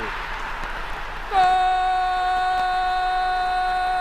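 A football commentator's long, drawn-out cry of "Gol", held at one steady pitch from about a second in, calling a goal. Before it there is a noisy stadium roar.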